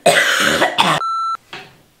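A woman coughing hard for about a second, a sign of the illness she thinks is the flu or a sinus infection. Right after comes a short single electronic beep.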